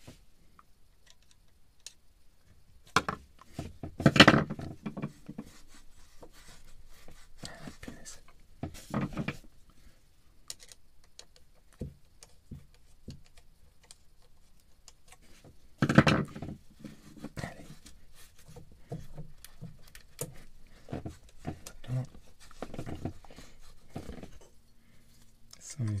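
Screwdriver working a metal hose clamp on a marine diesel's exhaust hose: scattered small metallic clicks and scrapes, with a few louder moments about 3, 4, 9 and 16 seconds in.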